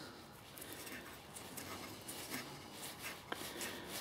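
Faint scratching and small ticks of a nylon bolt being turned by hand into a freshly tapped M3 thread in acrylic sheet, clearing plastic swarf out of the thread.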